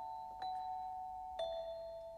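Orchestral film-score music: slow, single bell-like notes struck about once a second and left ringing, the line stepping down in pitch.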